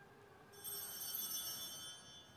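A cluster of small altar bells (Sanctus bells) shaken, a bright, high jingling ring that starts about half a second in and is stopped after about a second and a half.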